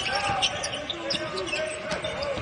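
Live basketball court sound: a basketball being dribbled on the hardwood floor, with faint voices on the court.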